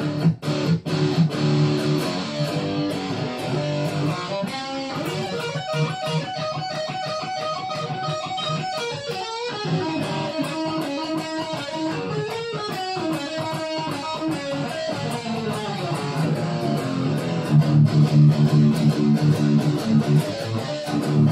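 Electric guitar played through an amplifier: a low repeated riff, moving to higher melodic lines a few seconds in, then back to the low riff, louder, near the end.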